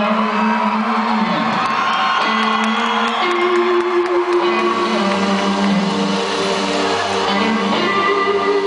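Live band music filmed from the audience at an arena concert: long held notes that step to a new pitch every second or two.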